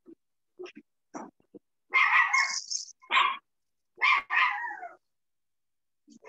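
Pet dog barking several times about two seconds in, the last barks dropping in pitch, heard over a participant's open microphone in a video call.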